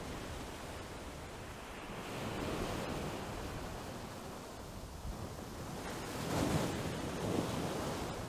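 Steady rushing of wind and sea, swelling a little about two and a half seconds in and again near six and a half seconds.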